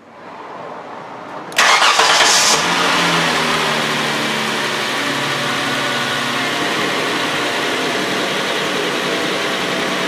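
2007 Hyundai Sonata's 3.3-litre V6 starting: it catches with a loud flare about a second and a half in, then settles into a steady idle.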